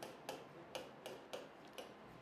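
Marker pen writing on a whiteboard: a string of faint, short ticks as each stroke lands and lifts, irregularly spaced.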